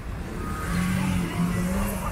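City car traffic driving past close by, with a low rumble throughout. About a third of the way in, one engine's steady note comes up over it.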